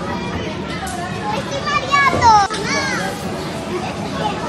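Children's voices in a busy hall: high squeals and calls that glide up and down, the loudest a falling squeal a little past the middle.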